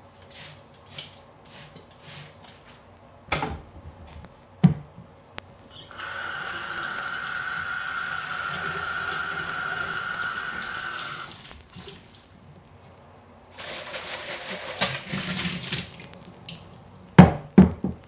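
Rinsing a plastic calf-feeding bottle at a utility sink: a few faint squirts from a trigger spray bottle of dilute bleach and a couple of knocks, then the tap running steadily into the bottle for about five seconds. After a pause the water is swished around inside the bottle, and a couple of sharp knocks come near the end.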